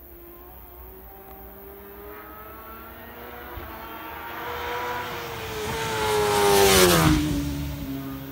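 A racing superbike approaching at full throttle, its engine pitch climbing as it accelerates and the sound building to its loudest about seven seconds in as it passes close by, then the pitch drops sharply as it goes away.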